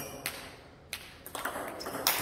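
Table tennis ball clicking off the bats and bouncing on the table during a serve and its return: about half a dozen sharp ticks, coming quicker in the second half.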